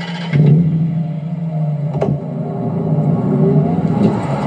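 Car engine revving up and running, with one sharp click about two seconds in.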